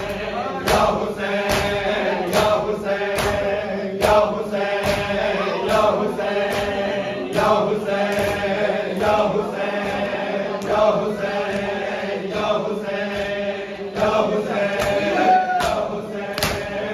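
A group of men chanting a mourning lament (nauha) together, with the slaps of hands beating on bare chests (matam) landing in time, a little faster than once a second.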